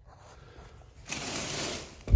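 A small access door in the attic wall being swung shut, giving a brief scraping rustle about a second in, after a quiet start.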